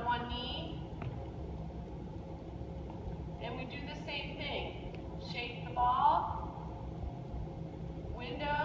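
A woman's voice speaking in a few short phrases over a steady low room hum.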